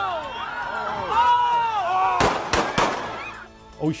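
Voices shouting and laughing in a street crowd, then a quick run of three or four sharp, loud bangs just past the middle, less than a second in all.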